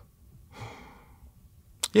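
A man's soft breath out, a brief sigh about half a second in, taken between sentences; he starts speaking again near the end.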